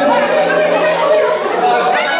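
A group of people chattering and calling out together while dancing, over music with a steady held note running underneath.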